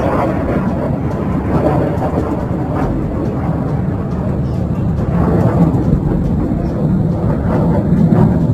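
Military jet flying overhead, a steady roar of engine noise that swells slightly about five seconds in.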